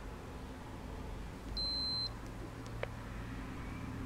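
Braun wrist blood pressure monitor giving one steady high beep, about half a second long, a little over a second and a half in, signalling that the measurement is finished; a faint click follows about a second later.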